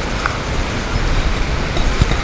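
Steady rumbling noise of a handheld camera's microphone being jostled and rubbed while it is carried, over the general din of a terminal hall.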